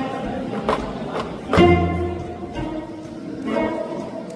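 Gayageum, the Korean zither, plucked in a slow solo. Separate notes ring and fade, and a loud deep stroke comes about one and a half seconds in.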